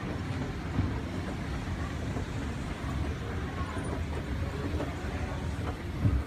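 Montgomery escalator running while carrying a rider down: a steady low rumble from the moving steps and drive.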